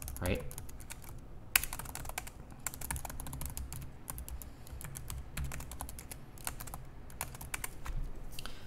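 Typing on a computer keyboard: a run of irregular keystrokes, with one louder key click about a second and a half in.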